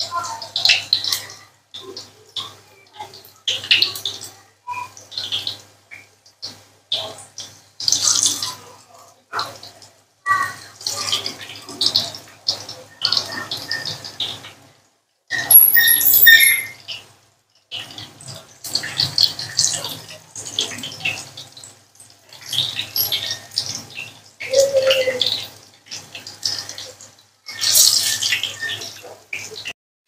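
Batter-coated paneer pieces sizzling as they deep-fry in hot oil in a frying pan, the sizzle coming in repeated bursts with short silent gaps between them as more pieces are dropped in one by one.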